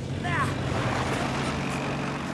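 A motor vehicle engine running steadily with a low hum, with a brief voice-like sound about a third of a second in.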